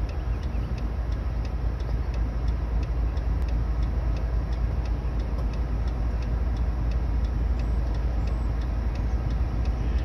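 GE AC4400CW diesel-electric locomotive running as it moves a freight train slowly off: a steady low rumble, with a faint regular ticking of about three ticks a second over it.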